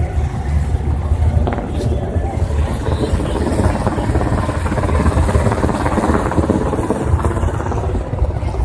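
Steady low rumble of engine noise, with indistinct voices mixed in.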